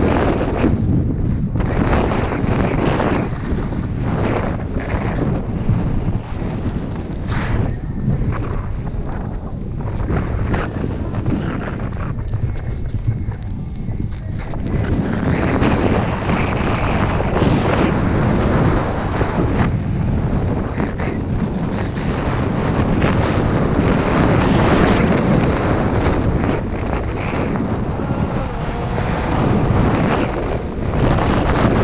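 Wind rushing over an action camera's microphone during a ski descent, mixed with the hiss of skis sliding over snow. It eases for a few seconds about halfway, then builds again.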